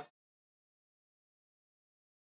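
Silence: the audio track is blank across a title card, with a faint tail of sound cut off right at the start.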